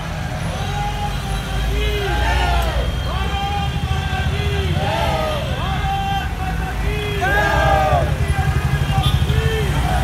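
Cars and SUVs of a slow motorcade driving past with a steady low rumble, while people along the roadside call out in repeated shouts that rise and fall in pitch.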